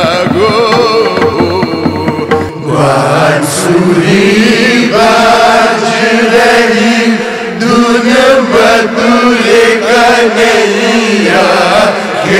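Indian classical-style raagmala music: an ornamented melody over a steady low drone, then about two and a half seconds in a multi-tracked chorus of voices comes in, chanting the song's lines in sustained unison.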